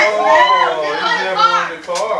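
Children's high-pitched voices talking and calling out continuously, too jumbled to make out words.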